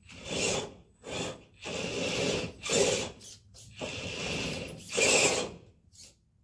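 GMade R1 RC rock crawler's electric motor and geared drivetrain whirring in a string of short bursts, each under a second, as the throttle is blipped on and off.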